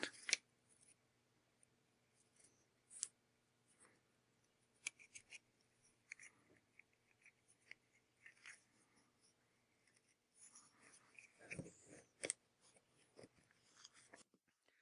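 Near silence with faint handling noise: a few small clicks and rubs as a leather cord is worked through a drilled bamboo bead, and a couple of slightly louder soft knocks near the end, over a faint steady hum.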